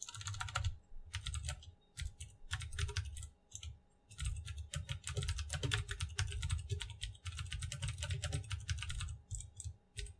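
Computer keyboard typing in quick runs of keystrokes broken by short pauses, stopping near the end.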